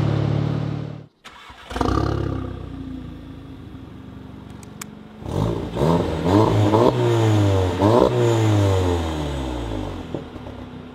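Audi S3 8V's turbocharged four-cylinder, heard through an Armytrix valved exhaust with the valves closed: a steady drone cuts off about a second in, then the engine starts with a short flare and settles to a low idle, and from about five seconds in it is revved in several quick blips, each rising and falling in pitch, before dropping back.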